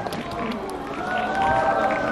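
Cinema audience chattering and calling out, several voices overlapping, with long high calls about a second in.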